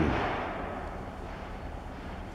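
Steady low background noise with a faint hum, as a spoken word's echo fades away in the first half second.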